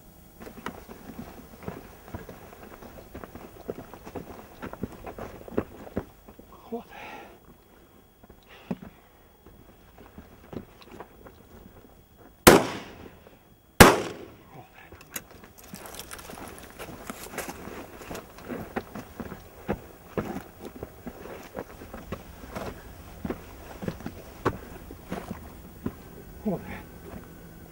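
Two shotgun shots about a second and a half apart, fired at a flushed partridge, each a sharp report with a short echoing tail. Faint crackling and rustling come before and after them.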